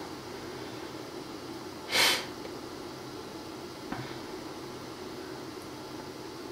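Steady background hum and hiss of a quiet room, with one short breathy burst of noise about two seconds in and a faint click near four seconds.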